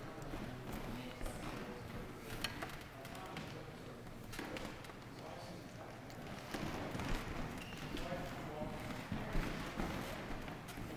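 Indistinct background voices murmuring, with a few short, sharp taps and knocks scattered through, the loudest near the end.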